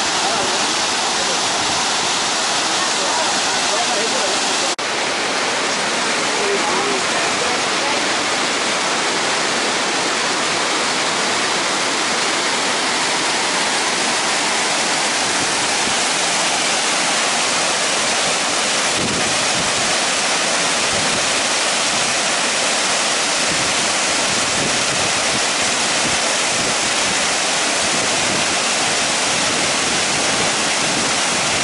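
A waterfall's falling water rushing steadily and loudly, with a brief drop about five seconds in.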